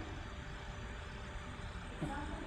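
Faint, steady background noise of the recording: an even hiss with a low rumble, with no distinct sound.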